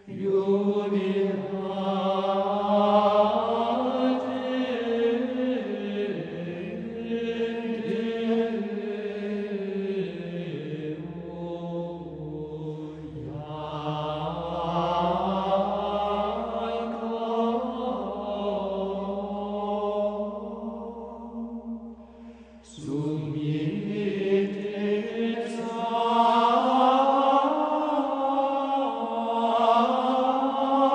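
Voices singing Gregorian chant: a slow, flowing melody with no accompaniment. The singing breaks off briefly about three-quarters of the way through, then a new phrase begins.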